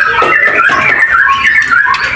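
Caged white-rumped shamas (murai batu) chirping and whistling, many short overlapping notes that glide up and down.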